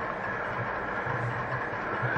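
Steady room tone, a low even hum with hiss, with no distinct events.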